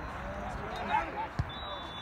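Faint, distant shouts of soccer players and spectators across the field, with one sharp thud of the ball being kicked about one and a half seconds in.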